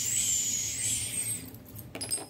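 A mouth-made "whoosh" sound effect: a long breathy hiss with a thin high whistle in it, fading out about a second and a half in.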